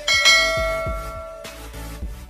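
A notification-bell 'ding' sound effect, struck once just after the start and ringing on as it fades over about a second and a half, over background music with a low thudding beat.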